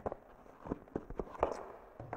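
Several light taps and clicks spread over about two seconds as a small boxed saw part is handled and set down on a wooden bench.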